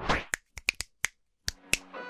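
A quick, uneven series of sharp snap-like clicks, about eight in under two seconds with silence between them: sound effects for an animated title card. Near the end, music with steady held tones begins.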